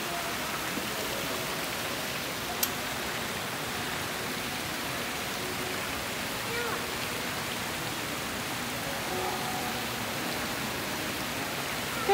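Indoor fountain's water jets splashing into its pool: a steady, even rush of falling water, with one sharp click a few seconds in.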